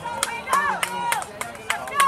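Spectators shouting high-pitched cheers of encouragement several times, with sharp claps in between.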